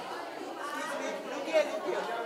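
Overlapping chatter of many voices in a large room, with a brief louder moment near the end.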